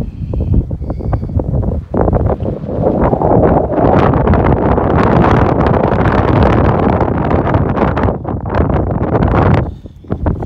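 Strong, gusty wind buffeting the camera microphone on an exposed mountain summit, building to its loudest through the middle and dropping away briefly near the end.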